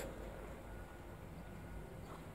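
Faint, steady background hum and hiss with no distinct events: room tone.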